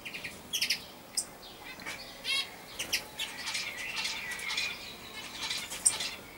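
Common starling calling: a few sharp clicks, a short fast rattle a little past two seconds in, then a dense run of chattering, whistled notes through the second half, with a loud click near the end.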